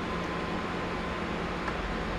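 Steady whooshing noise of an electric room fan running, with a faint steady tone.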